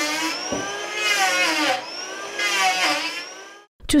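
Electric hand planer running on a timber beam. Its motor whine sags in pitch and recovers three times, about once every second and a half, as the blades bite into the wood.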